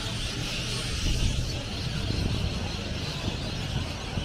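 City street traffic: cars driving past on the road beside the footpath, a steady wash of engine and tyre noise.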